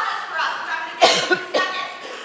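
A person coughing, two quick bursts about a second in, over a woman's speech.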